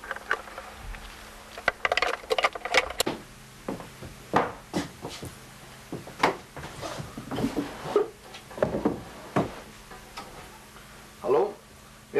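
Indistinct talking in short, scattered bursts over a faint steady hum.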